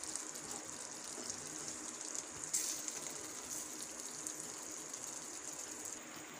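Thick egg kurma gravy bubbling and sizzling in a steel kadai on the stove: a steady, fine crackling hiss.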